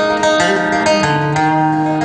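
Acoustic guitar being strummed live, chords struck every quarter to half second and left ringing.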